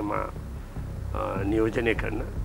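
Speech in Sinhala, two short stretches, over a low, steady background music bed.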